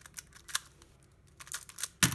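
Plastic Skewb puzzle being turned fast by hand: sharp clicks of its corners snapping through turns, a few early and then a quick run of them in the last half-second, as an H-perm algorithm is executed at speed.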